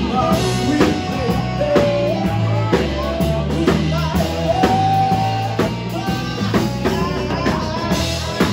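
Live blues band: amplified harmonica, played cupped around a handheld microphone, with held and bending notes over a drum kit, a walking bass line and electric guitar.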